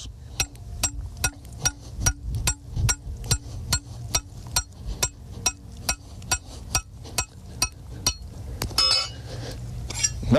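Hammer striking the top of a steel trap-stake anchor, driving it into the ground: steady sharp metallic strikes, about three a second, then a brief metallic jingle near the end.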